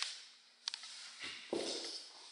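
An interior door closing: a sharp latch click, then two dull thumps a little over a second in.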